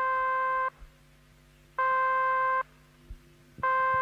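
Telephone line tone: three long, buzzy pitched beeps, each just under a second, about two seconds apart, with a faint low hum between them.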